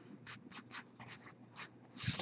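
Faint handling noise: a quick run of about ten short, soft scratches and rustles.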